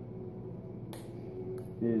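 A single sharp click about a second into a pause, with a fainter tick after it, over a steady low room hum.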